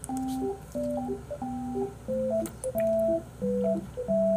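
Background music: a simple electronic tune of clean, beep-like notes, with a low note held under each higher melody note, moving at a steady, unhurried pace.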